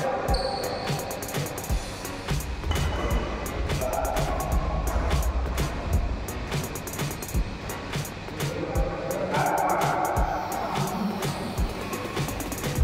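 Music playing under the sharp taps and thuds of a badminton doubles rally, several impacts a second, from rackets striking the shuttlecock and players' shoes on the court.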